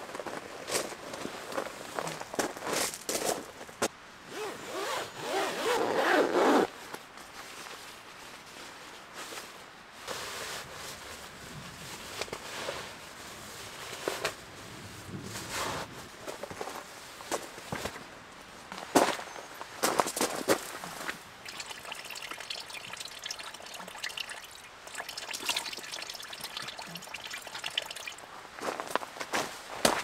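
Sleeping bag shell rustling and crinkling as it is handled and stuffed into its stuff sack, with a louder stretch about five seconds in that cuts off suddenly. Scattered crunches of gravel underfoot.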